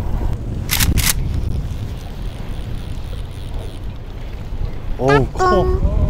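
Wind buffeting the microphone on a small fishing boat at sea, a steady low rumble. Two short, sharp hissing bursts come about a second in, and a brief voice sounds near the end.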